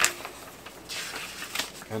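Paper rustling as a printed instruction booklet is handled and opened, its pages turned over about a second in.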